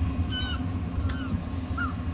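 Steady low rumble of wind on the microphone, with three short high calls, the middle one falling in pitch.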